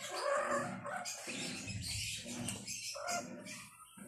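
Short, irregular cries from pet animals.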